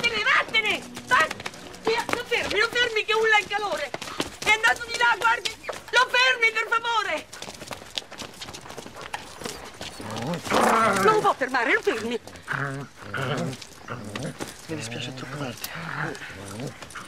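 A dog's high, wavering whining and yelping in several stretches over the first seven seconds, then quieter, lower sounds.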